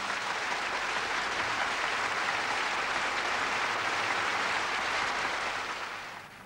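A large concert-hall audience applauding steadily, the clapping fading away near the end.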